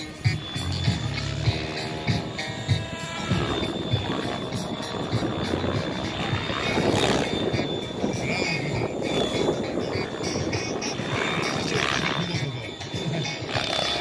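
Radio-controlled Mikado 690 model helicopter flying overhead, its rotor and motor running with a steady high whine. Music plays along with it.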